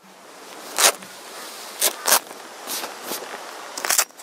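Short rustling, scraping handling sounds, about six in four seconds, as a roll-out van awning and its frame are worked by hand to pack it away.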